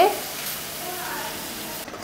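Masala paste of onion, garlic and ginger frying in oil in a pan over low-to-medium heat, sizzling steadily.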